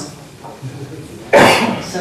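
A single loud cough about one and a half seconds in, after a quiet stretch.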